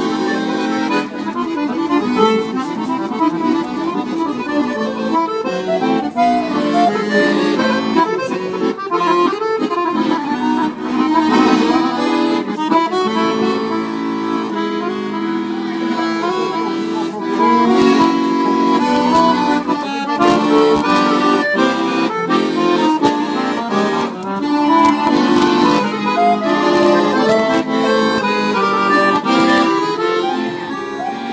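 Weltmeister piano accordion playing a Romanian hora melody, with quick runs of notes over sustained chords.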